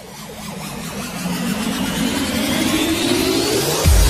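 Intro sound effect of a car engine revving, building steadily louder and rising in pitch like a music riser. A heavy bass hit lands right at the end as electronic music kicks in.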